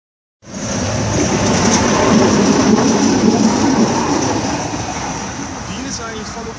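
Yellow Budapest tram running past on its rails, a loud rumbling rail noise that builds to its loudest about two to three seconds in and then fades as the tram moves away.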